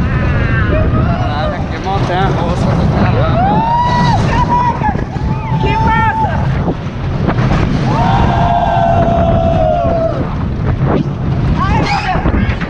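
Roller coaster riders screaming and whooping, with several long held cries, over heavy wind buffeting on the handheld action camera's microphone and the low rumble of the coaster train on its track.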